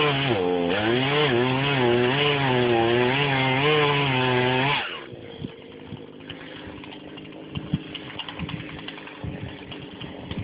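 Husqvarna 240 two-stroke chainsaw running under cutting load, its engine pitch wavering up and down as it works through the wood. About five seconds in it breaks off abruptly, leaving a much quieter steady engine hum with scattered ticks and cracks.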